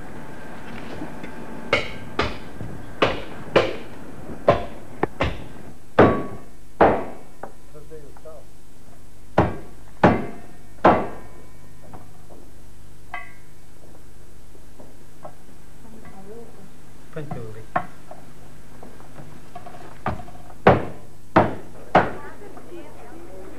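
A cleaver chopping a lamb carcass on a wooden chopping board: about sixteen heavy chops at an irregular pace, in three bursts, each ending in a short ring, over a steady low hum.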